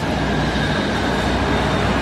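Steady street traffic noise, a low rumble with a hiss over it, picked up by an outdoor microphone.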